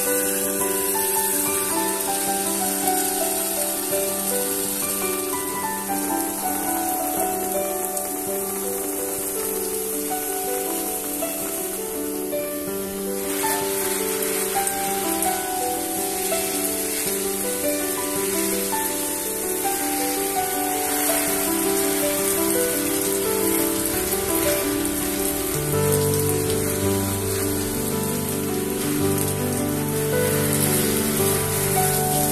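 Water spraying and pattering onto plant leaves, under background music with a melody; a bass line joins near the end.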